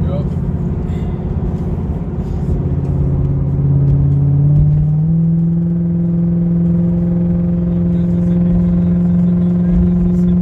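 Car engine heard from inside the cabin while driving: its note rises between about two and a half and five seconds in as the car speeds up, then holds as a steady drone.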